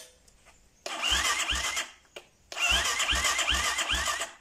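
The Xmoto 250 four-stroke's electric starter cranks the engine in two bursts: a short one about a second in, then a longer one of nearly two seconds. A whine comes with a low thump at each compression stroke, and the engine does not fire. The starter turns again after its stuck carbon brushes were freed.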